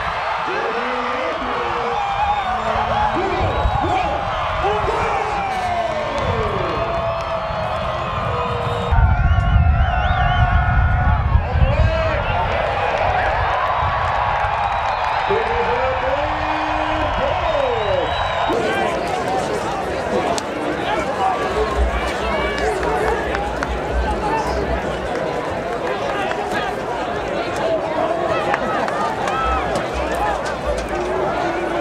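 Football stadium crowd cheering, with many indistinct voices mixed in. The sound changes abruptly at edits about nine and eighteen seconds in.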